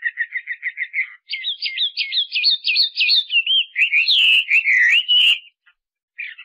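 A songbird singing: a fast run of short, even chirps, then a varied, warbling phrase of gliding notes that stops shortly before the end.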